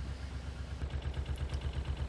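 Narrowboat's diesel engine running steadily while under way, a low even throb of regular beats.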